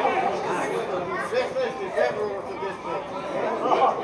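Spectators' voices: several people chatting at once, unintelligibly, near the microphone.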